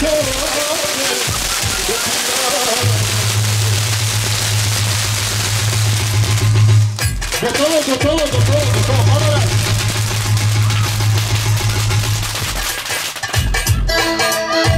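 Fireworks crackling and hissing in a dense, rapid run, with a short break about seven seconds in, dying away near the end. Band music continues underneath.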